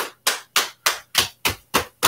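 Hands patting down the front outside of the legs in a steady rhythm, about three and a half slaps a second: qigong patting along the stomach meridian.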